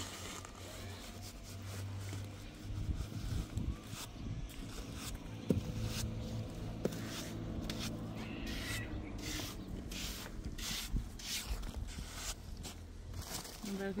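Steel trowel scraping and smoothing the wet surface of a concrete slab in repeated short strokes, about two a second in the second half.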